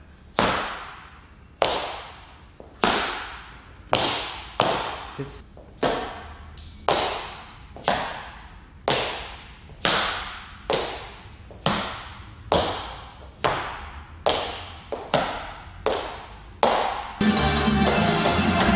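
Hard-soled dress shoes striking a wooden floor in a lezginka step: heel placements and hops landing about once a second, sometimes in quick pairs, each followed by an echo. Music starts near the end.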